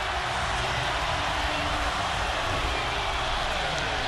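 Large stadium crowd cheering a long touchdown run, a steady, unbroken wall of cheering with no single voice standing out.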